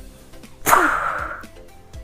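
Faint background music, with a short noisy transition sound effect about two-thirds of a second in. The effect starts suddenly and fades over about a second, with a falling tone inside it.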